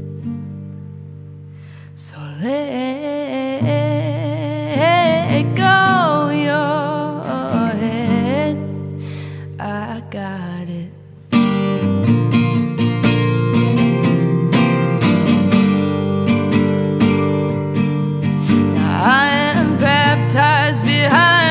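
A woman singing a slow melody over acoustic guitar. The guitar is quiet and ringing for the first half, then comes in much louder with full strumming about eleven seconds in.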